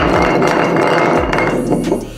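Glass bottle spinning on a tile floor, a continuous scraping rattle of glass on tile that dies away as the bottle comes to rest near the end.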